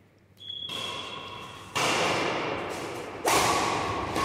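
Badminton racquets striking a shuttlecock in a rally: a serve, then two louder hits about a second and a half apart. Each hit is a sharp crack that rings on with a long echo in a large hall.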